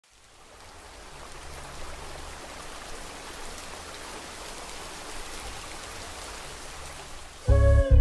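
Steady rain falling on water, fading in at the start and holding even. About half a second before the end, loud music breaks in over it.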